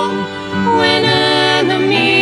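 A small mixed group of men's and women's voices singing a worship hymn in unison with violin accompaniment. One sung phrase ends shortly in and the next begins about half a second later.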